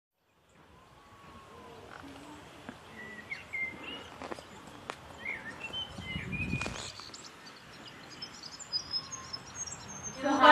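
Outdoor garden ambience fading in, with small birds chirping in short calls through the middle, and a brief low rumble about two-thirds of the way in.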